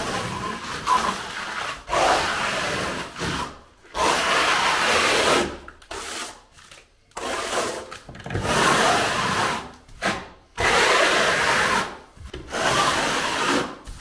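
A hand float scraping thin-coat silicone render tight against the base coat of a wall, in about eight sweeping strokes. Each stroke lasts a second or so, with short pauses between them.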